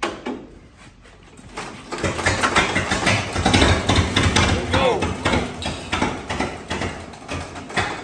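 Vintage Mack Model AB truck's four-cylinder engine, hand-cranked at the front, catching about a second and a half in and running with a rapid, uneven firing beat, then dropping away near the end.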